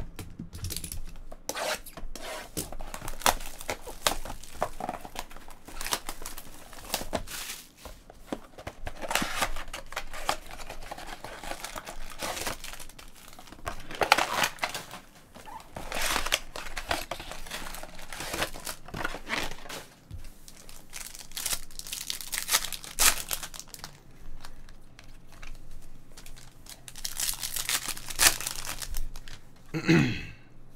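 Plastic wrapping being torn and crinkled by hand as a sealed box of trading cards and its card packs are opened, in irregular crackling bursts.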